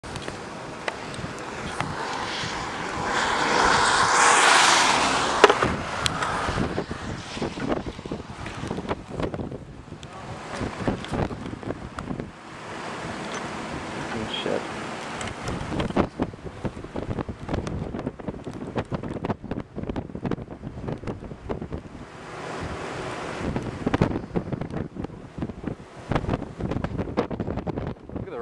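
Gusty wind blowing over the camcorder microphone, with a loud gust about four seconds in and scattered knocks throughout.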